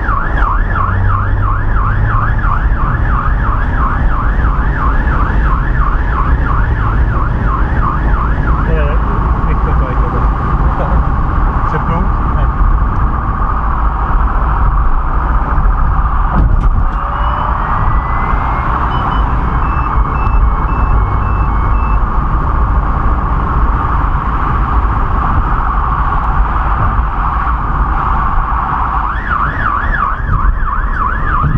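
Emergency vehicle siren in a fast warbling yelp. About nine seconds in it switches to a steadier tone, and near the end it goes back to the fast yelp, over the rumble of the vehicle's engine and road noise.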